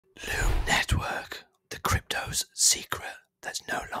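Speech in a whisper: a voice whispering a few short phrases, with strong hissing s-sounds.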